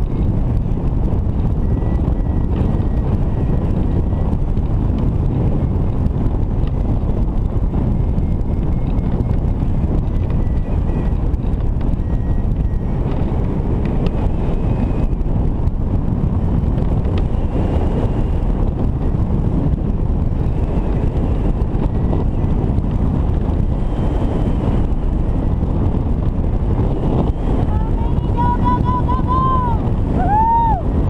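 Steady wind rushing over the microphone of a hang glider in flight. Near the end a variometer starts beeping in arching, rising-and-falling tones, its signal that the glider is climbing in a thermal.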